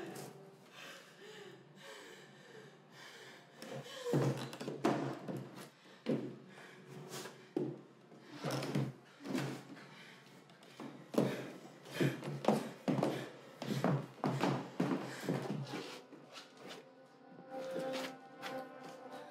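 Irregular heavy thumps and knocks of footsteps and scuffling on a wooden staircase as one person hauls another down it, over background film music.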